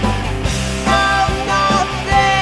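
A rock and roll song plays, with guitar and a sung vocal line over a full band.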